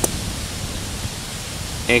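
A single sharp click at the very start, then steady background noise: a low, flickering rumble with a hiss above it, the sound of wind on the microphone outdoors.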